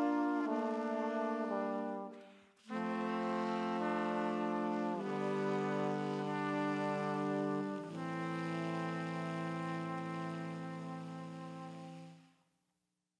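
Band and horn section (trombone, trumpet, tenor saxophone) playing a string of long held closing chords. The chords stop briefly about two and a half seconds in, then come back and change twice more. The last chord fades out near the end.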